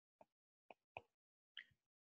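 Near silence broken by four faint, short taps: a stylus touching down on a tablet's glass screen while a word is handwritten.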